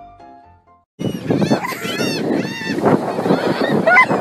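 Piano music fades out, then about a second in gulls start calling, several arching cries over a steady rush of wind and waves.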